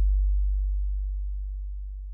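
One deep, held sub-bass note from the funk beat, fading out steadily as the track ends, with no vocals or drums left.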